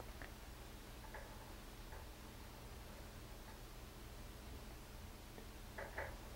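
Quiet room tone with a steady low hum and a few faint, short ticks.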